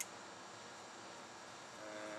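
A single sharp click of a Benchmade Mini Barrage folding knife's blade snapping into place, over a steady low outdoor hiss, with a short steady hum near the end.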